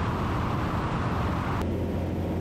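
Light aircraft's engine and propeller droning steadily in flight, under a wind hiss that drops away sharply about three quarters of the way through, leaving the lower drone.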